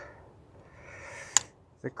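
A single sharp click from the plastic holder of a carded Stanley socket extension bar set being worked by hand, after a soft rustle of handling. A spoken word starts just before the end.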